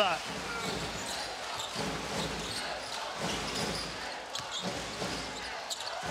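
Basketball arena ambience: crowd noise in a large hall, with a ball bouncing on the hardwood court and a few short, sharp sounds in the second half.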